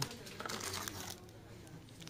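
Faint rustling and crinkling of plastic-wrapped wafer bars as one is picked out of a cardboard display box.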